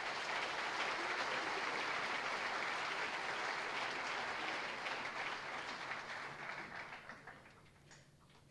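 Audience applauding at the end of a choir piece, dying away about seven seconds in.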